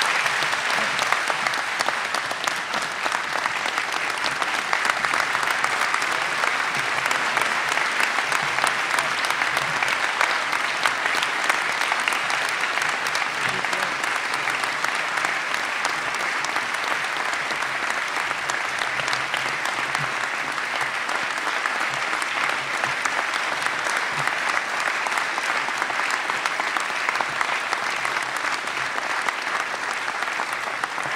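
Large audience applauding steadily, a dense unbroken clatter of hand-clapping.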